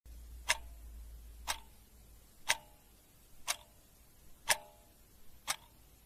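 Clock ticking, six sharp ticks evenly one second apart, counting down the seconds.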